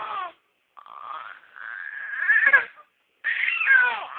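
A baby crying out in a series of long, high-pitched wails, the loudest about two and a half seconds in.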